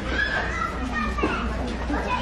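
Indistinct voices talking, some of them high-pitched like children's, over a steady low hum.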